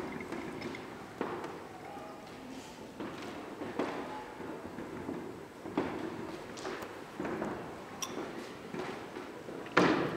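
Hall ambience with faint background voices and scattered short knocks and thuds, the sharpest near the end.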